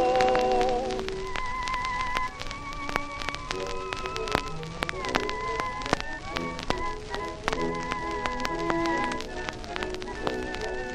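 Music from a 1915 acoustic-era 78 rpm gramophone record: a long wavering held note ends about a second in, then the instrumental accompaniment plays on without singing. Steady crackle and frequent clicks from the worn shellac surface run through it.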